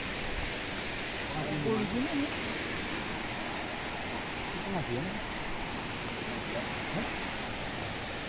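Steady rushing of flowing floodwater, with faint voices talking briefly a few times.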